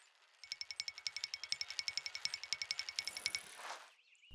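Rapid, even metallic ticking, about a dozen ticks a second for about three seconds: a cartoon sound effect of a bicycle freewheel coasting.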